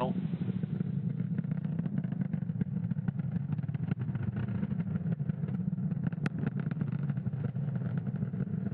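Falcon 9 first stage's nine Merlin 1D engines firing during ascent: a steady low rumble with continual crackling.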